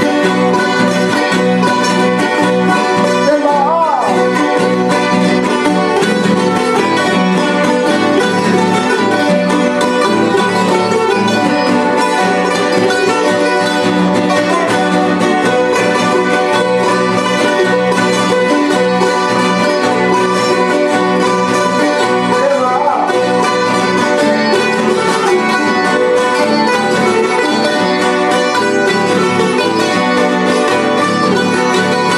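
An ensemble of plucked strings, guitars with smaller Andean lutes, strumming and picking an Ecuadorian San Juanito together.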